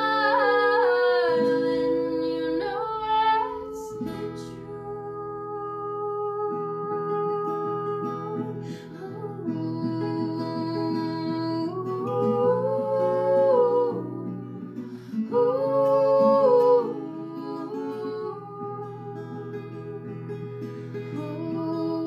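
Acoustic guitar with a capo played under female singing, the voice holding long notes.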